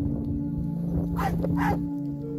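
A sled dog barks twice in quick succession, two short barks that drop in pitch, over steady background music.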